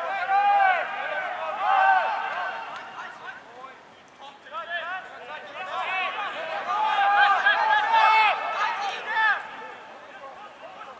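Rugby players shouting short calls to each other across the pitch during a training drill. The calls come thick over the first couple of seconds, ease off, then come again in a longer run from about the middle to near the end.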